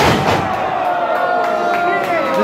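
A wrestler's body slams onto the ring canvas from a top-rope dive, a single sharp impact at the very start. The crowd then shouts in reaction, one voice held long.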